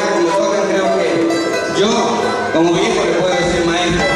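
Live Andean folk music from a small string ensemble playing an instrumental: plucked and strummed strings carry on throughout, with a melody line of gliding notes over them.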